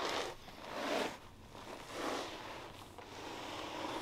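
Repeated scraping swishes, about one a second, as a heavy Sonus faber Serafino G2 floor-standing speaker is rocked corner to corner (walked) across carpet.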